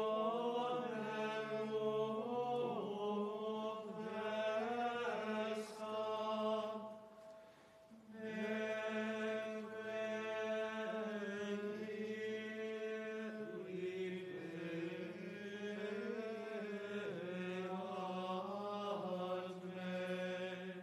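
Choir chanting, with sustained notes held beneath the moving melody and a short break between phrases about seven seconds in.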